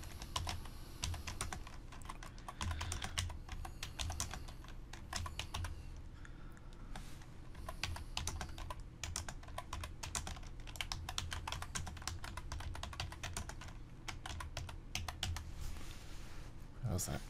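Computer keyboard typing: runs of quick keystrokes with a short pause about six seconds in.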